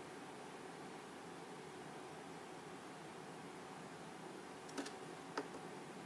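Faint steady room hiss, with a few small clicks about five seconds in from oscilloscope front-panel controls being turned and pressed, the run/stop button among them.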